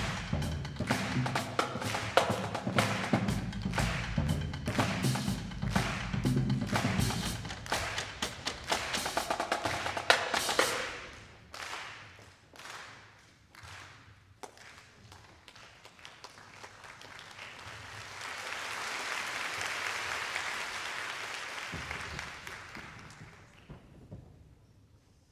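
Live ensemble music driven by dense, fast percussion. It ends about eleven seconds in with a few scattered last strokes. Audience applause then swells and dies away.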